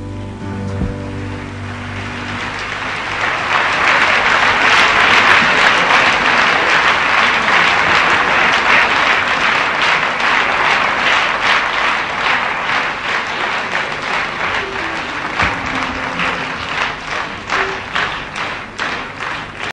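Audience applauding, swelling over the first few seconds as the last held chord of the song dies away, then thinning into more scattered claps near the end.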